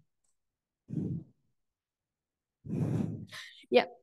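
A speaker's breaths close to the microphone during a pause in speech: a short one about a second in and a longer one near three seconds, then a brief spoken "yeah".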